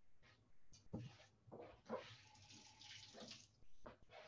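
Faint kitchen tap running for a second or so while cherries are rinsed, after a couple of soft knocks.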